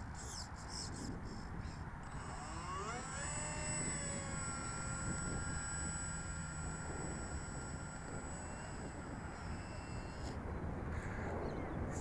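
Electric motor of a 1270mm Dynam F4U Corsair RC model throttled up to taxi: its whine rises in pitch about two to four seconds in, holds steady, then cuts off suddenly about ten seconds in.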